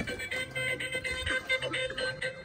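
A battery-powered toy playing an electronic tune through its small built-in speaker, a run of short beeping notes over a held tone.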